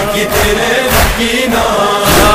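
Male voices chanting an Arabic nauha, a Shia lament, with a lead reciter and a chorus, kept in time by a thud about once a second.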